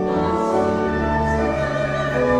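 Congregation singing a hymn with organ accompaniment, in long held chords that change about one and a half seconds in.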